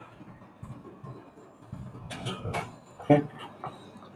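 Quiet room tone with a few short, faint vocal sounds from a man a little past the middle.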